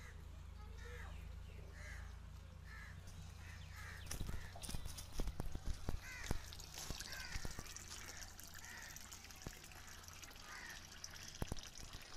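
Faint bird calls repeating about once a second, with sharp clicks and knocks from about four seconds in.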